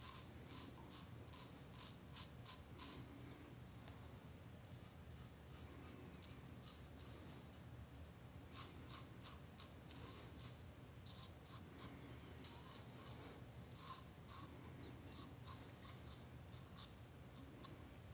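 Parker 64S closed-comb double-edge safety razor, loaded with a Personna Prep blade, shaving stubble on the upper lip: faint, crisp scraping in quick short strokes that come in runs with a few brief pauses.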